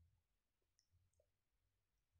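Near silence, with two very faint clicks near the middle.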